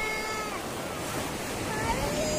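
Small waves washing onto a sandy beach, a steady rushing hiss, with a short high-pitched vocal call in the first half-second.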